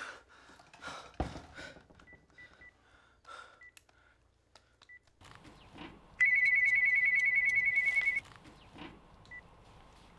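Cordless phone keypad beeping as a number is dialled, about half a dozen short beeps. Then an electronic phone ringer trills for about two seconds, and one more short beep comes near the end.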